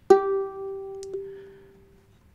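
A single ukulele note plucked just after the start and left to ring, slowly fading away, with a faint click about a second in.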